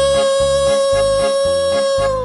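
Toy whistle blown in one long, steady, shrill note, over background music with a steady beat.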